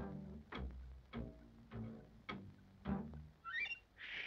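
Cartoon orchestral underscore: low strings playing pizzicato, a plucked note about every half second, each dying away quickly. A quick rising run of high notes comes near the end.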